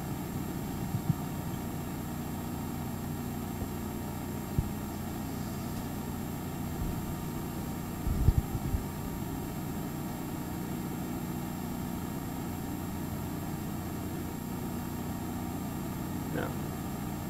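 Steady low hum of room tone, with a few low thumps and a short cluster of louder ones about halfway through.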